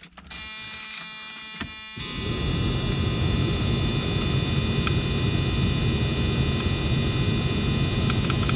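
Car's ignition switched to accessory: a steady electrical hum comes on at once, and about two seconds in a louder steady rushing noise joins it as the accessory circuit powers up.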